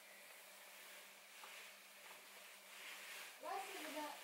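Near silence: quiet room tone with a faint steady low hum, and a faint voice speaking near the end.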